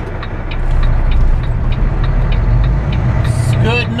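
Semi-truck engine running inside the cab, its low drone growing louder about a second in as the truck pulls through a left turn, with the turn signal ticking at an even pace.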